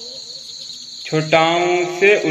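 A steady, faint, high-pitched chirring background like insects. About a second in, a voice comes in loudly, holding one long sung vowel: the drawn-out letter sound of a chanted Hindi alphabet rhyme.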